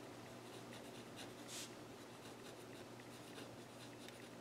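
Pen writing on paper: faint scratching strokes, one a little louder about one and a half seconds in.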